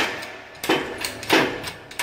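Toyota Hilux front wheel hub being forced out of its bearing in a hydraulic shop press, cracking twice, about two-thirds of a second apart. The cracking is the sign that the bearing is coming loose from the hub.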